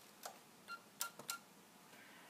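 A handful of faint, sharp clicks from radio equipment controls being switched to change to the 17 m band. There are about five clicks within a second, three of them with a brief high tone.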